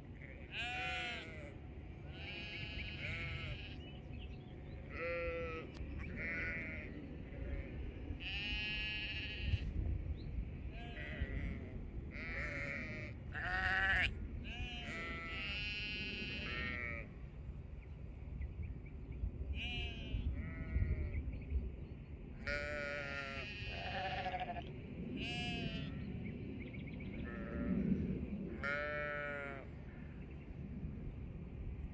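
A flock of sheep bleating, one call after another every second or two from several animals, many of the calls quavering.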